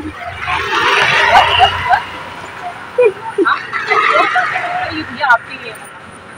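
Voices talking that cannot be made out, over a low steady hum of street traffic.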